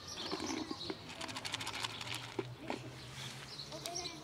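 Small birds chirping on and off in the background, with a rapid run of light clicks about a second in.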